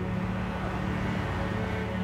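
Background music holding sustained low notes, over a steady haze of street and traffic noise.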